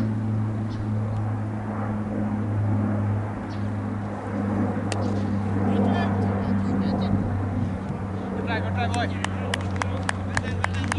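A steady low motor hum runs throughout, with faint distant voices over it and a few sharp claps near the end.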